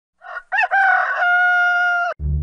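Rooster crowing: a short first note, then a full crow that settles into one long, steady held note.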